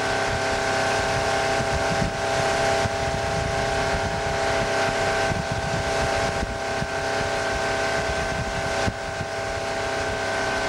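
Tow boat's engine running at a steady towing speed, one unchanging drone, with wind and water rush heard from aboard the boat.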